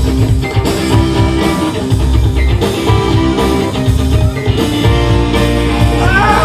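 Live rock band playing an instrumental passage: electric guitars over bass and drum kit, with keyboard.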